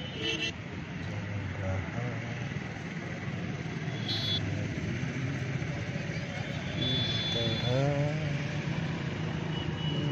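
Boat engine running steadily with a low hum while the boat crosses a calm lake, with people's voices heard at times, clearest near the end.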